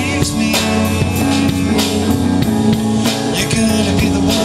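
Rock band playing live: electric guitar, bass guitar and drum kit, with a steady beat.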